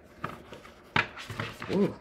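A tarot deck being shuffled by hand: a few short clicks of cards, a sharper one about a second in, as the cards nearly slip from the hands.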